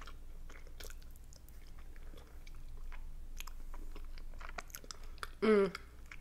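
Close-miked chewing of a boiled dumpling with sour cream, with many small wet mouth clicks. A short hum of the voice comes near the end.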